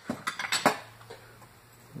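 Small china and glass items clinking and knocking together as they are rummaged out of a cardboard box, a quick run of clinks in the first half second or so, then quieter.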